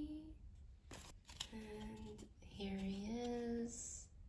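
A woman humming two short phrases, the second louder, with a rustle and scrape about a second in as a photocard is slid out of a taped plastic toploader.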